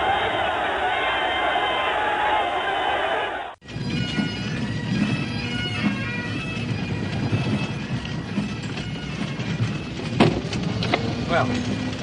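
Crowd noise that cuts off abruptly about three and a half seconds in. Then a Highland pipe band plays bagpipes, with a steady drone under the tune, and a man's voice comes in near the end.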